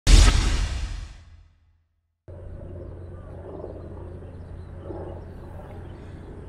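Intro sound effect for a title card: a sudden loud boom that fades out over about a second and a half. After a brief silence, steady outdoor background noise with a low hum begins.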